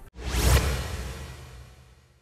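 A whoosh transition sound effect with a low rumble underneath. It swells in suddenly, peaks about half a second in, and fades away over the next second and a half.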